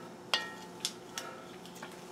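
Four light metallic clinks of a utensil against the metal Dutch oven holding the braising shank. The first, about a third of a second in, is the loudest and rings briefly.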